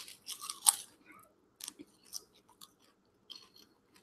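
A person biting off and chewing a piece of food close to the microphone: a few sharp crunches in the first second, then softer, scattered chewing crunches.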